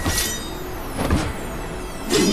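Sword-fight sound effects: two sudden whooshing blade strikes about a second apart, each trailed by high falling metallic tones, over a low rumble.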